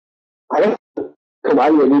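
Speech: a voice speaking Arabic in short, clipped phrases over a web-conference audio link. It starts abruptly out of dead silence about half a second in.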